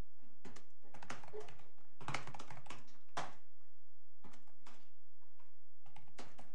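Computer keyboard typing: irregular short clicks in small clusters, over a steady low hum.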